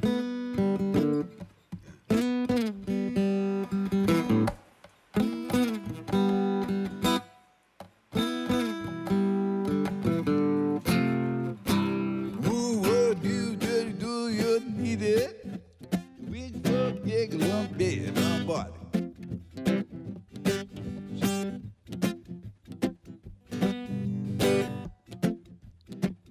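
Solo acoustic guitar playing chords, with two brief pauses in the first eight seconds.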